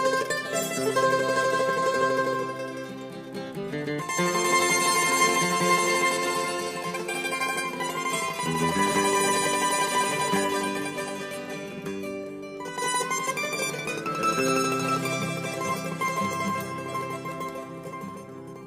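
Instrumental passage of Hungarian Romani folk music played on plucked string instruments, moving in phrases a few seconds long and growing quieter near the end.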